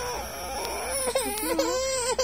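Infant fussing while drowsy, with eyes closed: a run of short, wavering whimpering cries that grow a little louder toward the end.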